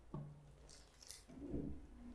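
A few faint, brief rustling and handling noises, with a short low hum near the start and a hissy scrape about a second in.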